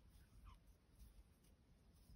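Near silence: room tone, with faint soft sounds of a crochet hook working yarn and a weak tick about half a second in.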